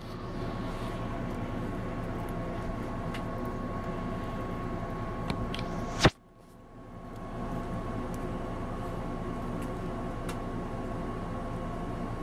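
Steady background hum made of several even tones, with a few faint light clicks from a metal compressor valve plate and reed being handled. About six seconds in comes one sharp click, then the hum drops out and swells back over about a second.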